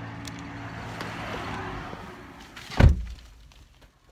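A 2010 Toyota Camry's electric power-window motor whirring steadily for a couple of seconds and fading out. Just under three seconds in comes one loud thunk.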